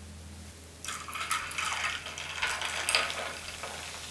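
Cola poured from a plastic bottle into a glass tumbler, an uneven pouring and fizzing sound that starts about a second in and runs for a few seconds.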